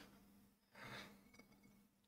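Near silence, with one faint, short breath about a second in.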